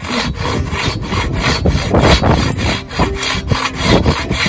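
Silky Katanaboy 650 folding pull saw cutting through a dry driftwood log, a steady rhythm of rapid rasping strokes.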